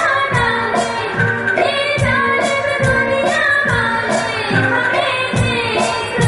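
Live band performance of a Hindi film song: singing over keyboard with tabla and drums keeping the beat.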